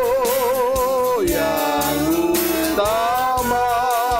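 A man singing an Indonesian worship song with instrumental accompaniment, holding long notes with wide vibrato; about a second in the melody drops to lower notes, then climbs back to a held, wavering note near the end.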